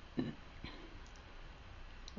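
Two faint clicks, typical of a computer mouse button: the first and louder about a fifth of a second in, a softer one about half a second later, over a faint steady hiss.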